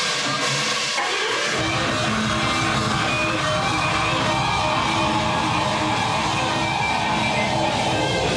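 Live rock band starting a song: a guitar plays with little low end at first, then about a second and a half in the drums and bass come in and the full band plays loud.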